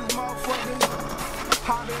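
Skateboard wheels rolling on concrete, with three sharp clacks of the board, over background music.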